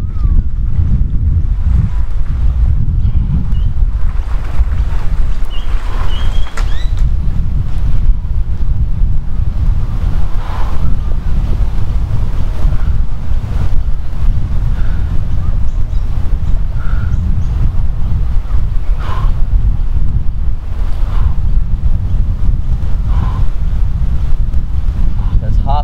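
Wind buffeting the microphone: a loud, steady low rumble throughout, with faint short sounds rising above it now and then.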